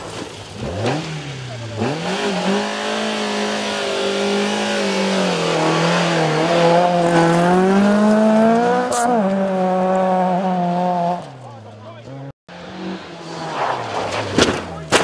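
Rally car engine revving hard on a gravel stage. It climbs in pitch, then holds a high, slightly wavering note for several seconds before falling away. After a brief dropout, another car's engine rises as it approaches.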